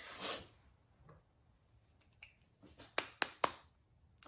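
A woman's breathy exhale right at the start, then three sharp clicks in quick succession about three seconds in.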